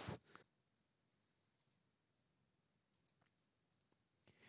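Near silence, with a few very faint clicks of a computer mouse.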